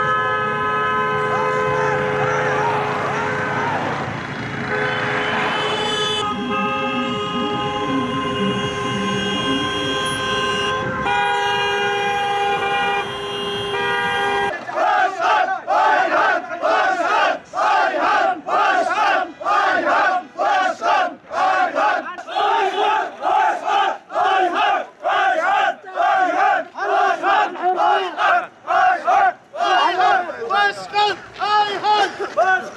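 Many car horns sounding together in long, held, overlapping blasts from a line of cars. After a cut about halfway, a large crowd of men chants a slogan in unison with a steady rhythm.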